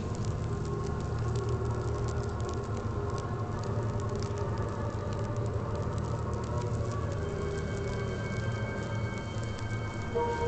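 Background score for a drama scene: a low, sustained drone with held tones, a few higher tones entering in the second half, over a faint, steady crackle.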